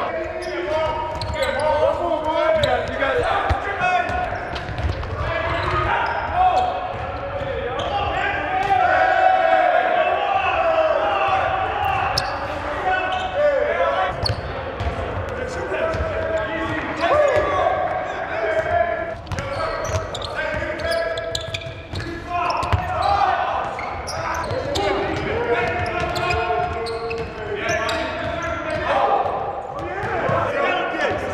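Players' voices calling and chattering in a large, echoing gym, with a soccer ball being kicked and thudding on the hardwood court again and again.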